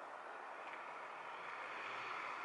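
Steady wash of distant road traffic noise, swelling slightly toward the end.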